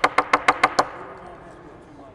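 Hair stacker tapped rapidly on the bench, about seven sharp knocks a second, stopping just under a second in: deer hair is being stacked to even up its tips.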